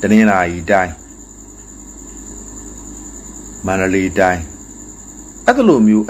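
A man speaking in three short phrases with pauses between them, over a steady high-pitched trill that runs underneath throughout.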